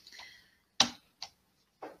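Three short, sharp clicks at a computer, the loudest about a second in, as a presentation slide is advanced.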